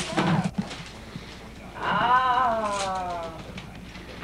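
A young girl's long, drawn-out exclamation about two seconds in, sliding slowly down in pitch, as she unwraps a boxed doll. It is preceded by a brief rustle of wrapping paper at the start.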